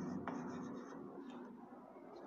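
Chalk scratching on a blackboard as figures are written, faint, dying away about a second in.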